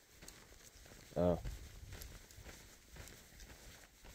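Faint, irregular footsteps and rustling of a hiker walking a dirt trail, under a single spoken 'uh' about a second in.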